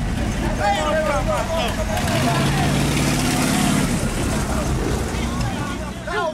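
A car engine running, its note growing louder in the middle and then fading, with voices talking in the background.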